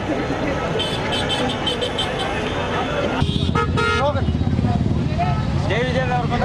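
Street traffic and a shouting crowd: a vehicle horn sounds briefly a little after three seconds in, and a heavy low engine rumble follows under the voices.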